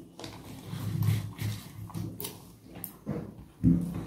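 Eating sounds of a person chewing a mouthful of rice and fish curry, soft and close, with faint clicks of fingers working the rice on the plate. A short, louder mouth sound comes near the end.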